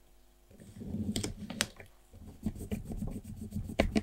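Fingers pressing and smoothing a sticker onto a small paper planner page: paper rustling and rubbing with a few sharp taps of fingernails, starting about half a second in and loudest near the end.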